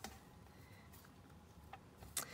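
Near silence: room tone, with one faint click near the end.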